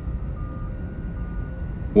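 Sci-fi starship interior background ambience: a steady low hum with faint, intermittent high electronic tones.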